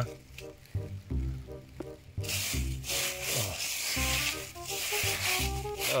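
Dry leaf litter and moss rustling and scraping under a hand searching the forest floor. The scratchy noise thickens from about two seconds in, over background music with sustained low notes.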